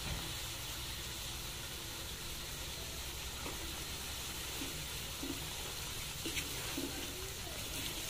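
Semolina (sooji) roasting in hot oil in an aluminium kadai: a steady sizzle, with a few faint scrapes as a wooden spatula stirs it.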